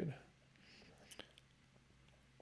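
Quiet room tone after a man's voice trails off at the very start, with a faint breath and a few soft clicks around the middle.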